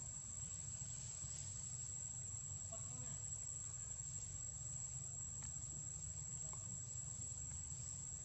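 Insects shrilling in the surrounding forest: one steady, unbroken high-pitched tone, over a low steady rumble.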